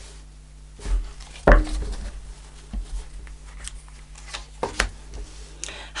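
Tarot cards being handled and laid down on a cloth-covered table: a few short taps and slides, the sharpest about a second and a half in, over a faint steady hum.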